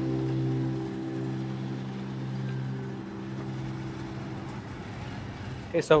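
Background music of held, sustained chords fading out, giving way to faint street noise. A man starts speaking near the end.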